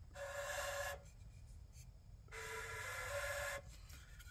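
Wooden Native American flute from a kit, blown for two short, breathy notes. The first lasts about a second; the second starts lower and steps up. Its poor tone comes from a splitting edge that is too thick and not knife-sharp, as the maker judges.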